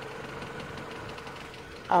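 A car engine idling steadily: a low, even hum.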